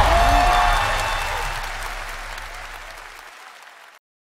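Applause fading out steadily to silence over about three seconds.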